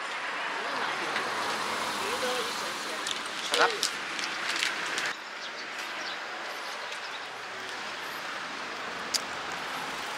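Steady rushing outdoor background noise with faint distant voices; the noise drops a little about five seconds in.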